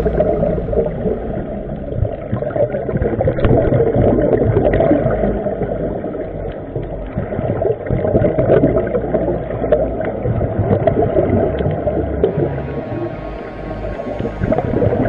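Muffled underwater sound picked up by a camera below the surface on a coral reef: a dense low rumble and wash of water noise that swells and eases every few seconds, with scattered faint clicks.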